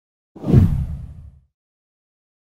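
A single deep whoosh sound effect of an animated intro. It swells in suddenly about a third of a second in and fades away over about a second.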